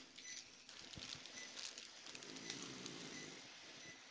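Near silence: faint room noise with a faint low murmur around the middle and a few faint clicks.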